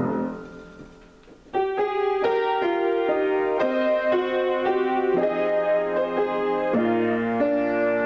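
Grand piano played solo: a held chord dies away over the first second and a half, then the playing resumes with a melody over sustained chords.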